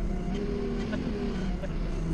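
Doosan 4.5-ton forklift's engine running steadily while the truck drives, heard from inside the cab as an even low hum.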